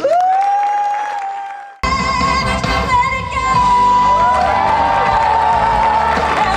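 A single long "woo" whoop, rising then held for about two seconds, cut off abruptly by live band music. A singer holds long high notes over drums and bass.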